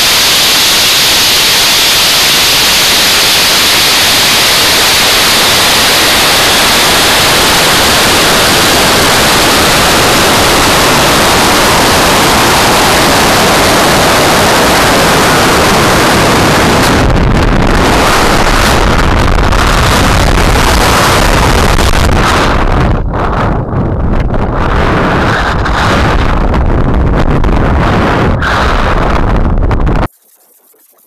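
Loud rush of air over the rocket's onboard camera microphone as it climbs: a dense, steady hiss that, a little past halfway, turns into rougher, lower buffeting with brief dropouts.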